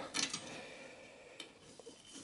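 Faint handling noise of gloved hands moving SATA and power cables inside a steel PC case, with a single light click about one and a half seconds in.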